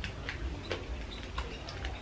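Faint, irregular clicks and soft handling noises of food and paper wrapping while ketchup is squeezed from a plastic squeeze bottle.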